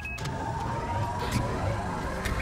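Motorized hidden wall panel sliding open: a steady mechanical whir with a low rumble and a faint whine that rises slightly in pitch.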